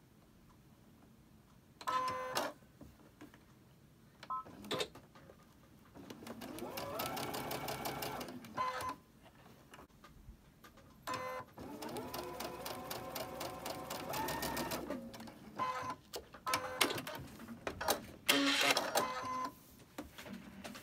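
Baby Lock Ellisimo Gold II computerised sewing machine stitching a seam across fabric triangles in two runs of a few seconds each. Each run speeds up at the start and then stops, with short bursts of the machine before, between and after.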